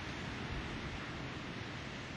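Steady wash of surf breaking on a sandy beach, mixed with wind rumbling on the microphone.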